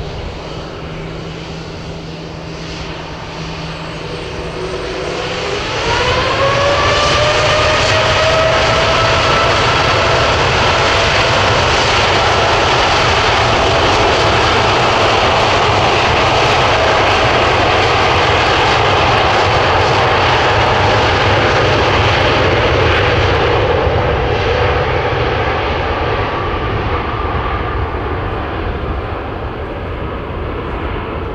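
Boeing 787-8 Dreamliner's Rolls-Royce Trent 1000 engines spooling up to take-off power. About five seconds in, a rising whine comes over a deep roar, then holds loud and steady during the take-off roll. The sound fades over the last few seconds as the jet moves away.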